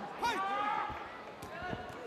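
Men's voices calling out over the ring in the first second, then a couple of sharp thuds as the two kickboxers come together and clinch.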